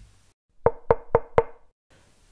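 Four knocks on a door, evenly spaced about a quarter second apart, each with a short ring.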